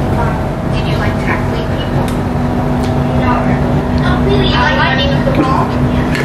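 Indistinct voices over a steady low hum that carries a constant tone, with the voices louder between about four and five and a half seconds in.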